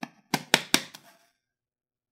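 Handling noise from a heavy network switch being turned over in the hands: a click and then three or four sharp knocks within the first second.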